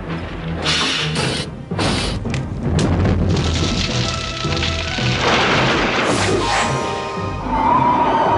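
Cartoon action soundtrack: dramatic orchestral music with a run of crashes and booms in the first few seconds, then a dense rushing noise building up under the music.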